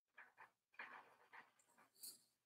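Near silence: a pause in the talk, with only a few very faint, short breathy noises.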